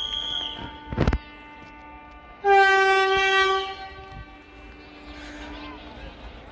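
A train horn sounding twice: a first held tone that breaks off about a second in with a sharp knock, then a louder, lower blast about two and a half seconds in, held for about a second before fading.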